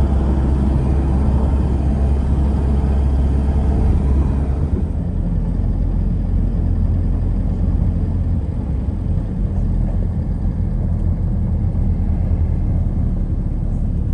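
Steady low rumble of a car driving, heard from inside the car. About five seconds in it eases and turns duller.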